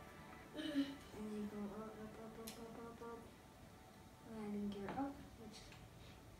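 A child humming in held, level tones, in two stretches with a short pause between, with one small sharp click in the middle.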